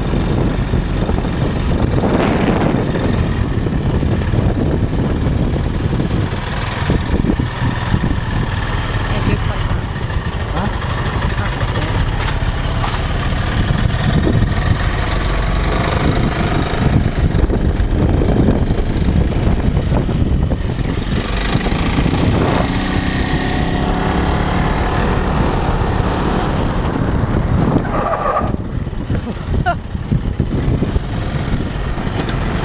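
Open dune buggy driving along a town street: steady engine and road noise heard from the seat.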